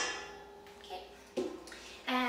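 A stainless steel mixing bowl struck by a spatula and a container, ringing and dying away after each knock. There are two knocks, at the start and about a second and a half in.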